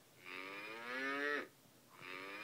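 A recorded cow moo played through an electronic farm toy's small speaker as the animal-sound quiz clue: one long moo of just over a second that drops in pitch as it ends.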